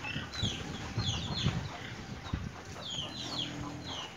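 Chickens clucking and chirping, with many short falling chirps scattered throughout, over low dull thumps.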